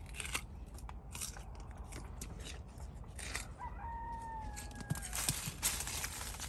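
Leaves rustling and crackling in irregular short bursts as foliage is handled close to the microphone, with a single long, slightly falling call about halfway through.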